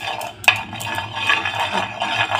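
A spoon scraping and tapping around a hot coated tawa as melted ghee is spread across it, with a sharp clack about half a second in.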